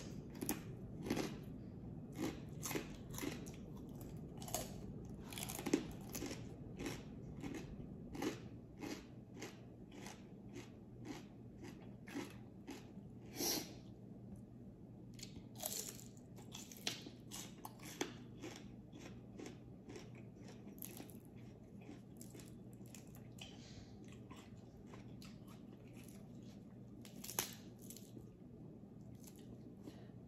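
Close-miked chewing of crunchy food: crisp fried pork skin crunched in many quick bites, with the crunches thinning out in the second half as raw leafy greens are chewed.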